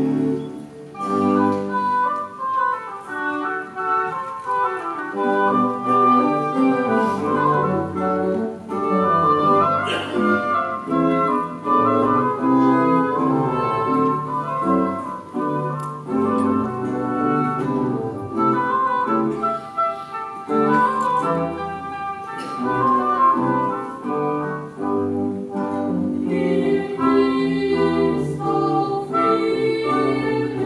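Baroque orchestra playing, the woodwinds prominent over strings, with a lute and harpsichord continuo.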